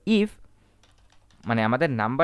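Faint computer-keyboard keystrokes, a short run of soft clicks in a pause of about a second between stretches of a man's speech.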